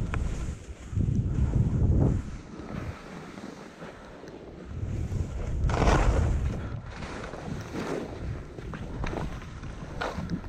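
Wind buffeting the microphone of a skier going downhill, with skis hissing over fresh snow. The gusts swell about a second in and again around five to six seconds, the loudest rush near six seconds.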